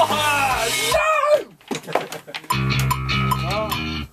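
Electric bass guitar played along with a rock backing track with drums, as the bass part of a song is recorded. The music drops out about a second and a half in, comes back a second later with a strong bass line, and stops abruptly at the end, with a wavering voice singing over it at the start and again near the end.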